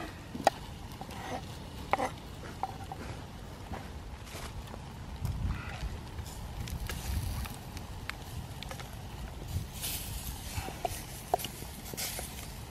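Wood campfire crackling with scattered sharp pops, mixed with light knocks and scrapes of a knife on a wooden chopping board and a wooden spoon stirring in steel camping pots.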